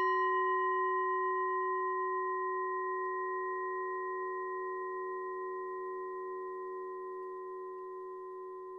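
A Buddhist bowl bell, struck once, rings out with a few clear steady tones that slowly fade away.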